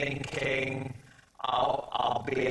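A man speaking, with a short pause a little after a second in.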